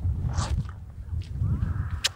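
A pony blowing one breathy puff through its nostrils about half a second in, its nose right at the microphone, over a steady low rumble of wind on the microphone.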